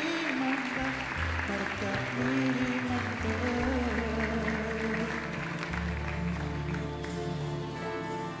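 Audience applause over music with held notes and a bass line; the clapping thins out toward the end.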